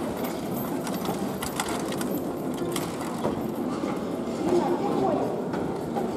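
Indistinct voices in a large, echoing indoor hall, with a horse-drawn driving carriage passing across the sand arena floor, its hooves and wheels giving faint irregular knocks.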